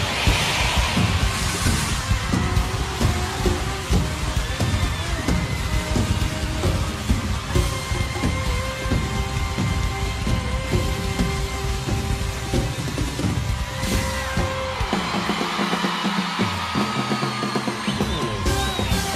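Live pop band music with a steady beat. Near the end the bass and drums drop out for about two seconds, leaving sustained notes, then come back in.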